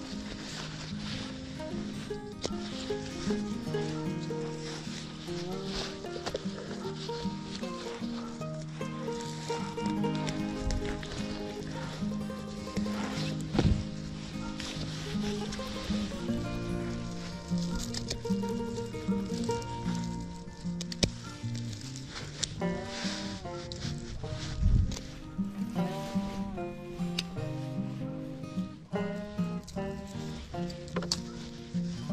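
Background instrumental music with a melody of held notes. Under it, scattered crackling and rustling of dry grass and stems being pulled by hand, with a louder knock about halfway through and another a little later.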